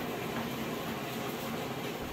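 Enoitalia electric grape crusher-destemmer running with a steady, even mechanical noise as grape clusters are pushed into its auger hopper.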